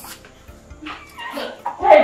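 A woman's rising cry that breaks into a laugh near the end, over background music.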